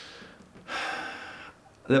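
A man drawing an audible breath in, lasting under a second, before speech starts near the end.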